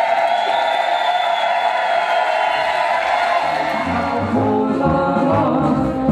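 Brass band folk dance music with group singing: a long held sung note, then the band's bass comes in with a steady oom-pah beat about three and a half seconds in.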